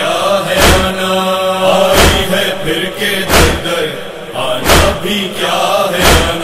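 A nauha, a Shia mourning lament, chanted by a single voice held on long drawn-out notes without clear words, over a heavy rhythmic chest-beating (matam) thump that lands about every second and a half, five times.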